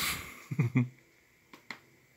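A man's short breathy exhale and a brief voiced grunt, like a stifled chuckle, followed by two faint clicks about one and a half seconds in, typical of a laptop touchpad being clicked.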